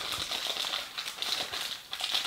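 Thin clear plastic bag crinkling in faint, irregular crackles as fingers handle it to get a small plastic toy headband out.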